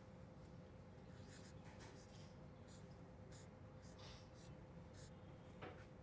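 Faint scratching of a marker pen drawing on paper, in short, separate strokes.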